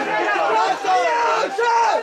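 Several voices shouting at once, overlapping one another, as players and onlookers react to a foul.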